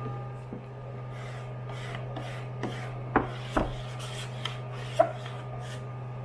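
A hand smoothing and pressing a sheet of card stock down onto a sticky hold-down mat: soft paper rubbing and scraping, with a few sharper rubs or taps about halfway through and near the end, over a steady low hum.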